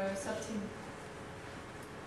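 A woman's voice ends a hesitant filler sound in the first moment, then there is a pause with only a steady faint hiss.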